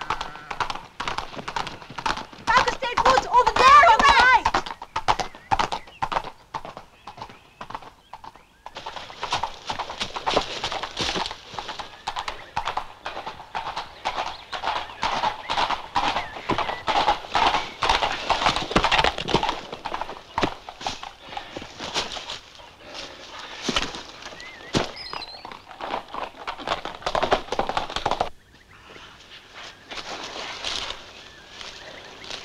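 Horse's hooves clip-clopping in a quick, uneven rhythm on a paved road, with a loud wavering whinny a few seconds in.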